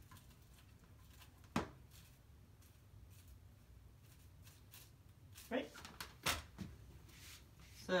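Handling sounds from gluing fabric flowers onto a collar with a hot glue gun: faint rustling, a sharp click about a second and a half in, and a couple of knocks about six seconds in.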